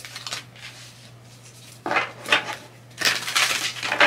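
A deck of cards being shuffled by hand: a few light clicks, then a short burst of the cards rubbing and slapping together about two seconds in, and a longer, louder burst near the end.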